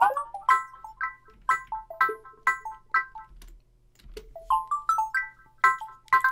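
A chopped plucked-synth loop playing short bright notes about two per second, with pitch automation bending some notes so they slide in pitch. It thins out briefly just past the middle, then returns with upward-sliding notes.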